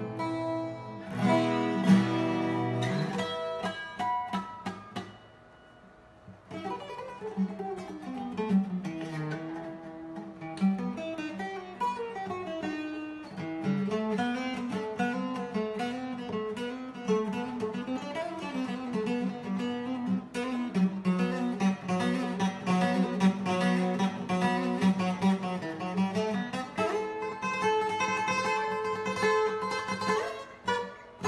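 Twelve-string acoustic requinto guitar (Fortaleza) played solo: a few ringing chords, a brief pause a few seconds in, then a continuous run of quick melodic single-note lines in the requinto lead style.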